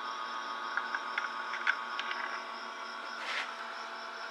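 Steady electrical hum made of several held tones over a faint hiss, with a few faint clicks in the first half and a short breathy puff about three seconds in.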